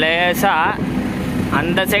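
A voice singing long, sliding notes, over the steady low hum of the Tata Ace mini truck's engine as it drives.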